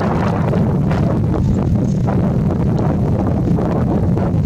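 Wind buffeting the camera microphone: a loud, steady low rumble that covers most other sound.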